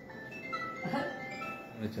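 A simple electronic tune played as thin, high single notes, one after another, with brief voices over it.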